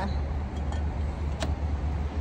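Motor vehicle engine idling: a steady low rumble, with a couple of faint clicks partway through.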